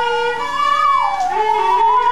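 Violin bowed in long sustained notes, the upper note sliding up and back down about halfway through, over a lower held note.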